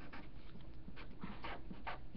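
Sharpie felt-tip marker writing on paper: a run of faint, short scratchy strokes, several a second, as letters are drawn.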